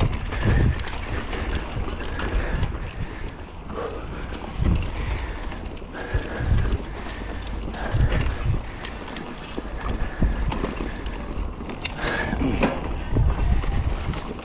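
Mountain bike ridden up a dry, loose dirt trail: tyres rolling over the dirt and the bike rattling, with many sharp clicks and louder swells every second or two, over a steady rumble of wind on the microphone.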